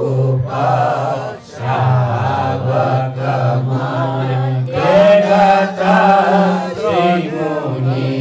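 A group of male voices chanting a Buddhist text together from books, a steady recitation on a held pitch. There is a short break for breath about one and a half seconds in, and the pitch steps up a little about five seconds in.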